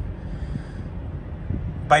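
A steady low rumble of background noise with no distinct events; a man's voice begins right at the end.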